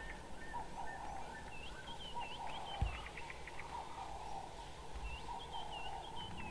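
African wild dogs twittering: scattered high chirps and short quick runs of chirps, with a soft low bump about three seconds in.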